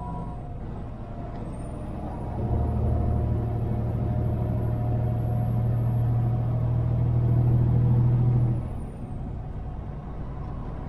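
Semi truck's diesel engine heard from inside the cab, running steadily, then growing louder and deeper about two and a half seconds in. It holds that heavier note for about six seconds with a faint high whine above it, then drops back sharply near the nine-second mark.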